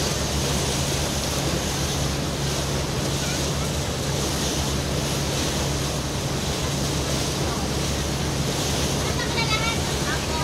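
Motor boat under way: a steady low engine hum under the rush of water along the hull and wind on the microphone. A voice starts near the end.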